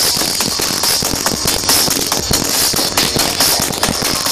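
Loud sound of a festival crowd and stage sound system, heard as a dense, steady crackle of irregular sharp clicks with a bright hiss on top.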